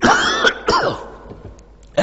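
A man coughing twice into his fist, the second cough shorter.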